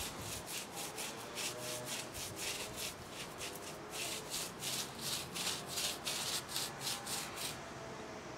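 Paintbrush scrubbing primer onto rough render at a wall corner: a quick run of short scratchy brush strokes, about four a second, that stops shortly before the end.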